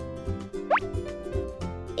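Light background music for a children's video, with one quick rising "bloop" sound effect a little over half a second in.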